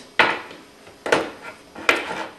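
Tin food cans knocking as they are handled for opening: three sharp knocks, about a second apart, each ringing briefly.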